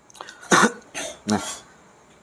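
A man gives two short, sharp coughs about half a second and one second in, clearing his throat, followed by a short spoken word.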